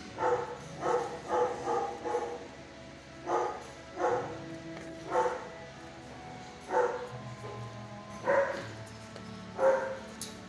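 Dogs barking in a shelter kennel, about a dozen single barks at irregular intervals, some in quick pairs.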